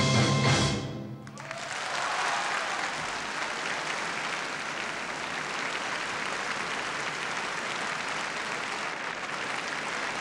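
Piano and full orchestra end on a final chord that cuts off about a second in. A concert-hall audience then applauds steadily.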